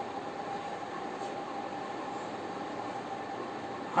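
Steady background hiss of room noise with a faint steady hum, and faint scratching of chalk on a blackboard as words are written.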